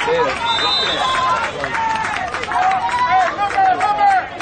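Loud overlapping voices shouting and calling out at once, with some long held calls.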